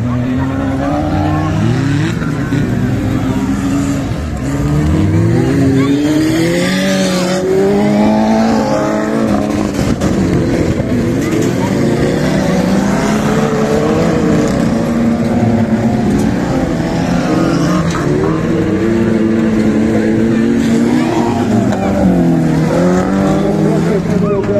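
Several stock-car engines revving hard at once, their pitches rising and falling as the cars accelerate and lift off.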